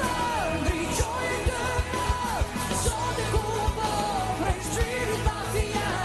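Male rock singer belting a ballad in Albanian with a full band behind him: drums hitting at a steady beat, bass and held chords under long, sliding sung notes.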